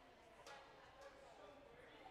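Near silence: faint ice-rink room tone with distant, murmured voices and a single faint click about half a second in.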